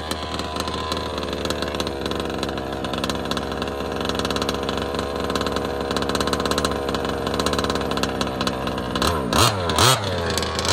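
The gas two-stroke engine of a Losi DBXL 2.0 1/5-scale RC buggy runs steadily, its pitch wavering a little as the buggy drives. Near the end it revs hard in a few quick, louder bursts, the pitch swooping up and down.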